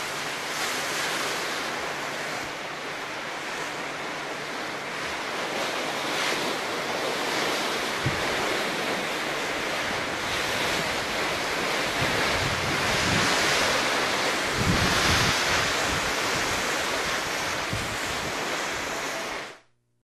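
Steady rush of wind and sea, with gusts of wind buffeting the microphone in the second half; it cuts off suddenly near the end.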